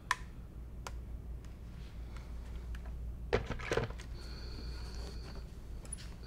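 Quiet handling of sewing tools on a work table: a few light clicks and taps over a steady low hum, with a faint high whine in the last couple of seconds.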